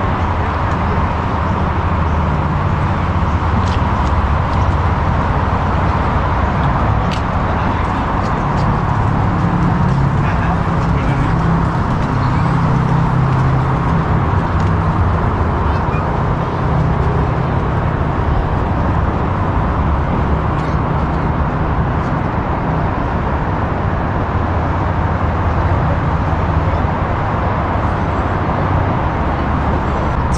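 Steady, low rumble of road traffic.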